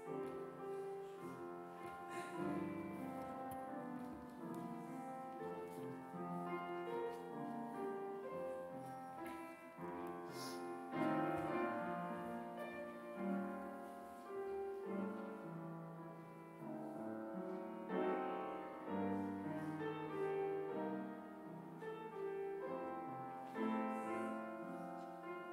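Upright piano played solo, a hymn tune in chords and melody, unsung.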